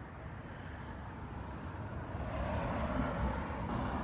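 A vehicle passing by on the road, its noise swelling over the second half and easing slightly near the end.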